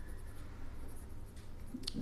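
Ballpoint pen writing on paper, a faint scratching as words are written out by hand, with a short click near the end.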